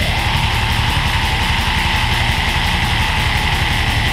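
Death/black metal band from a demo recording kicking into a full-band section: distorted guitars over rapid, even kick-drum hits, starting suddenly at the very beginning after a quieter guitar passage.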